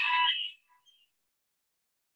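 The tail of a spoken greeting on a video call, a held word that stops abruptly about half a second in, followed by dead silence.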